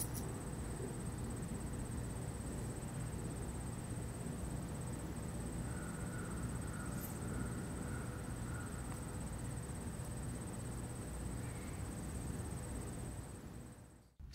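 Steady outdoor ambience picked up by a camera's built-in microphone: a low rumble and hiss with a faint high whine throughout. No autofocus motor noise is heard from the Sigma 14-24mm F2.8 DG DN lens during the focus pulls; its focus drive is basically silent.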